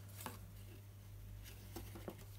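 A few faint, light knocks from handling a wooden Ashford Inklette inkle loom and its shuttle while weaving, as the weft is pulled through the shed: one about a quarter second in and two close together near the end.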